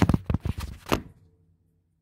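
A few sharp knocks and clicks in the first second as things on a wooden desk and the camera are handled, then near silence.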